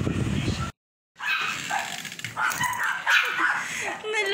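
A small dog's short, high barks and whines. They come after a low rumbling noise that cuts off suddenly, with a moment of dead silence about a second in.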